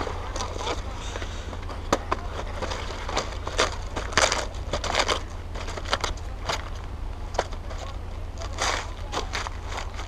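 Crisp romaine lettuce leaves crackling and rustling in short irregular bursts as a freshly cut romaine heart is handled and its outer leaves worked loose, over a steady low wind rumble on the microphone.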